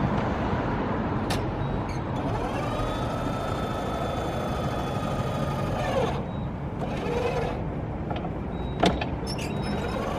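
PowerMate L1 stair climber's 12 V electric lift motor whining as it runs a climbing cycle: the whine rises in pitch as it starts about three seconds in, holds steady, and falls away as it stops around six seconds, then starts again at the very end. A sharp click comes about nine seconds in, over a steady background rumble.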